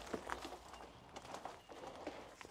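Faint, scattered rustles and short knocks of old matted chicken-coop bedding being pulled up and handled.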